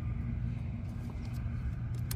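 An engine running steadily at idle: an even, low hum.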